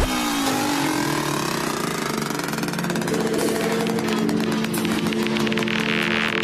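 Psytrance breakdown: the kick drum and deep bass cut out at the start, leaving sustained synth drones with synth lines sliding in pitch, and a hissing swell building near the end.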